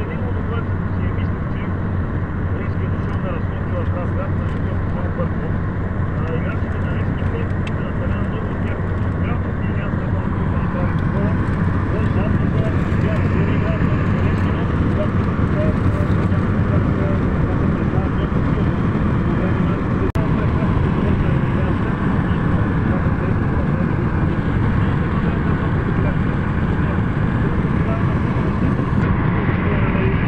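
Steady road and engine noise inside a car's cabin at motorway speed, getting a little louder about twelve seconds in.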